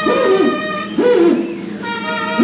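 Brass band music: a held chord dies away while a brass instrument plays short swooping phrases that slide up in pitch and back down, twice.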